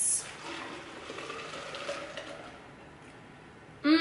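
Homemade almond milk being poured into a Vitamix blender jar: a steady liquid splashing that tapers off after about two seconds.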